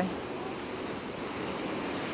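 Black Sea surf breaking and washing on a pebble beach in a rough sea, a steady rushing wash with wind blowing across the microphone.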